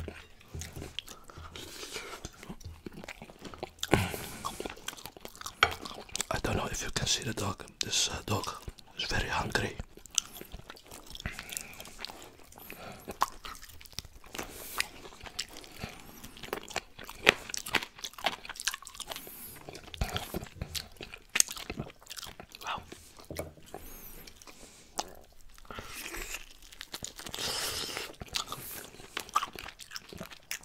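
Close-miked open-mouth chewing and lip smacking on baked chicken, with bites into the meat and frequent sharp clicks throughout.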